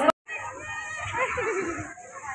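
Children's voices and chatter, one high voice sliding down in pitch about a second in, over a steady high hiss; the sound drops out for an instant just after the start at a cut.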